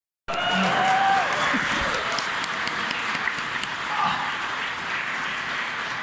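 Concert audience applauding and cheering, with a few shouts near the start.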